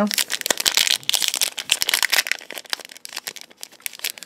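Foil wrapper of a Pokémon Base Set booster pack crinkling as hands work it open, a dense crackle that thins out toward the end.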